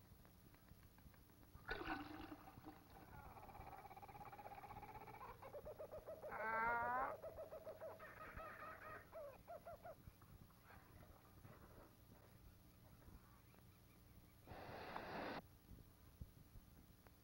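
An animal's pitched calls, long and wavering, peaking in a loud, fast-warbling call about six and a half seconds in, then shorter chattering calls. Near the end comes a brief splash of water in an enamel washbasin.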